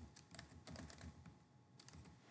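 Faint computer keyboard typing: a quick run of keystrokes, a short pause, then a couple more keys near the end.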